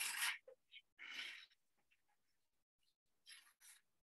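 Crooked knife slicing shavings off a stick of soft cedar: faint, soft cutting strokes, one about a second in and two short ones near the end.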